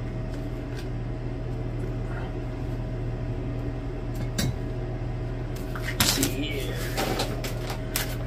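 Steady low electrical hum with a thin whine above it, then a few knocks and clatters as containers are handled and set down on the wooden bench about six seconds in.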